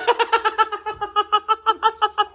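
High-pitched laughter: a rapid, unbroken run of short 'ha' pulses, about seven a second.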